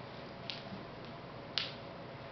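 Two short, sharp clicks about a second apart, over low room hiss.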